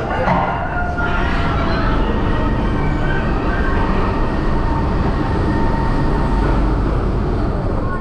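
Mack Rides wild mouse car being carried up the vertical elevator lift: a steady, loud mechanical rumble with a faint high whine from the lift machinery.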